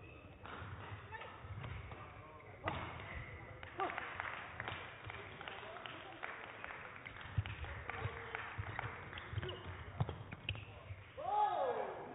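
Badminton rally: sharp cracks of rackets striking the shuttlecock at irregular intervals over a low background murmur in the hall. A voice calls out near the end.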